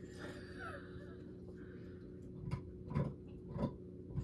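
Faint sipping and swallowing of tea from a mug: a soft slurp, then three quiet gulps about half a second apart in the second half.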